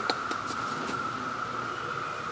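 Faint clicks and light rustling as a man shifts his boots and body around a tree-mounted saddle-hunting platform, over a steady high-pitched hum.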